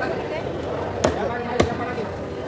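Two cleaver chops, about half a second apart, through tuna on a round wooden chopping block, over background voices.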